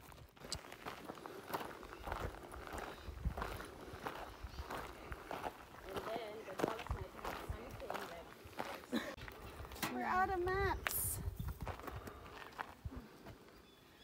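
Footsteps on a gravel and dirt track, about two steps a second. A short voice about ten seconds in.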